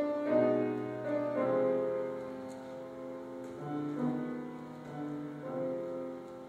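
Piano playing held chords as the accompaniment to an operatic aria, the harmony changing every second or so, with a louder chord struck at the start.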